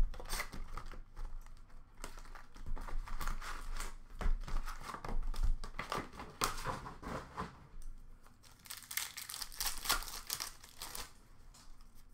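Hockey trading card packs and their retail box being torn open by hand: an irregular run of sharp rips and crinkling foil wrappers, loudest right at the start.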